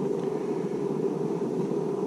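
Steady low rushing noise with no distinct events, like a motor or fan running.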